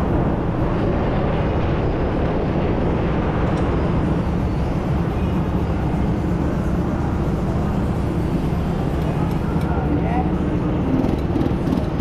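Go-kart engines running on an indoor track: a steady drone echoing in the hall, with a faint rising whine of revs near the start and again about ten seconds in.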